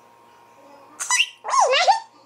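A young girl giggling and squealing in a high voice: a short squeal about a second in, then a longer wavering one that rises and falls.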